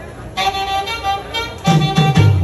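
A live band starting a song: a sustained melodic lead instrument comes in about half a second in, and the bass joins near the end.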